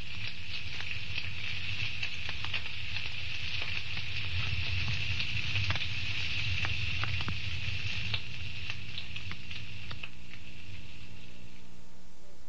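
Evening chorus of calling insects: a steady high-pitched trill, with scattered faint clicks and a low steady hum underneath.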